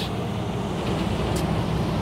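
Steady road-vehicle noise: an even roar with a low hum underneath, holding level throughout.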